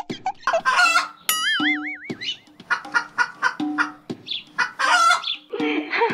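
Chicken clucking and squawking over background music, with a wavering whistle-like tone about a second in.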